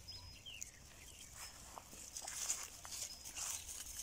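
Quiet pasture sounds of goats moving and grazing in grass: faint scattered rustles and small clicks, with a couple of brief faint high whistles.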